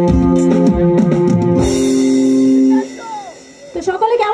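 Live band with electric guitar and drum kit playing the closing bars of a Hindi film song, ending on a held chord that cuts off about three-quarters of the way in. Just before the end, a voice starts to speak.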